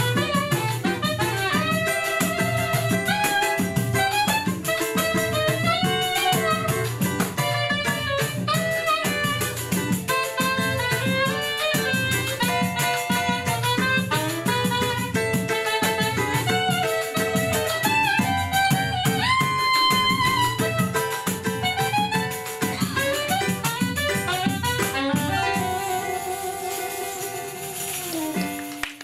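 Live choro ensemble playing: a saxophone melody over strummed cavaquinho and pandeiro and tantan hand percussion. Near the end the music settles on held notes and fades as the piece closes.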